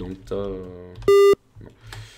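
A short, loud electronic beep with a buzzy tone, about a third of a second long, that cuts off abruptly.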